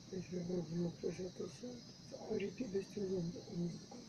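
A person's voice in short wavering phrases with no clear words, over a steady high hiss.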